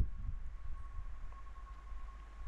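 Faint steady low hum with a thin, steady high tone above it: the recording's background noise, with no other sound.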